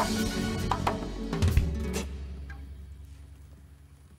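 The closing bars of a live Catalan rumba band with acoustic flamenco guitars and drums: a few final accented hits in the first second and a half, then a last low note rings on and fades away.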